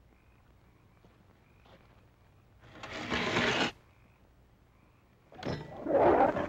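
A large dog snarling twice: a short snarl about halfway through, then a louder, longer one starting near the end.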